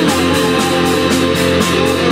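Live rock band playing loudly: guitar over a steady beat of about four hits a second.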